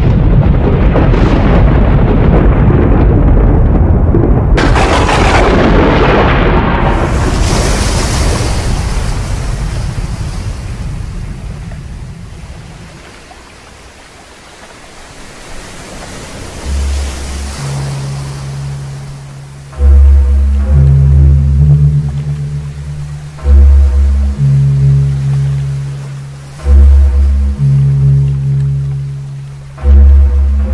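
Thunder rumbling, with a second crash about four seconds in, dying away before halfway. Then music of deep held bass notes comes in, with loud swelling bass hits about every three and a half seconds.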